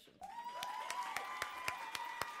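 Audience applause, starting a moment in as many hands clap, with a few voices holding cheers over the clapping.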